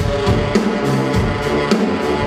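Live brass band music: a drum kit beats out a steady rhythm under a tuba bass line and horns.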